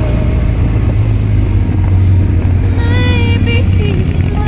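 Motorcycles on the road at cruising speed, a steady low engine rumble throughout. A wavering melodic line comes in briefly near three seconds in.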